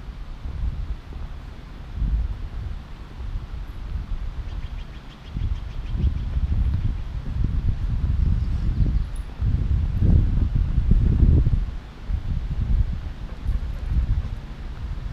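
Wind buffeting the microphone as it moves outdoors: a gusty low rumble that rises and falls in uneven swells.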